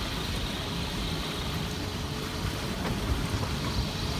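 Wind buffeting the microphone and water rushing past the hull of a Sadler 290 sailing yacht under way in a gusty wind, a steady noise with a low rumble.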